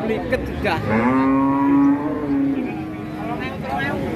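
A cow mooing once, a single long call of about two seconds that starts about a second in.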